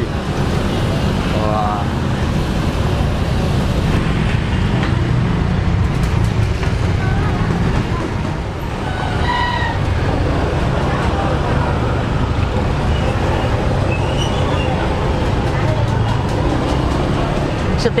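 Roadside traffic: motorbike engines running and passing, a steady low rumble throughout, with faint voices in the background.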